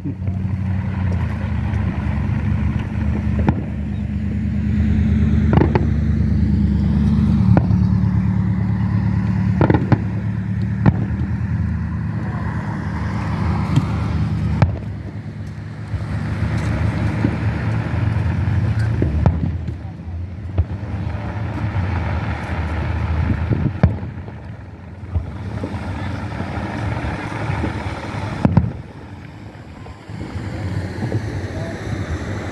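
Aerial firework shells bursting in the sky, a sharp bang every few seconds at irregular intervals, over a steady low drone and faint voices.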